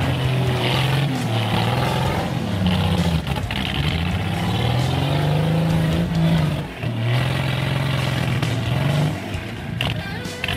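Engine of an off-road 4x4 rally vehicle revving under load as it climbs a rocky bank, its pitch rising and falling several times, with a brief drop about two-thirds of the way through.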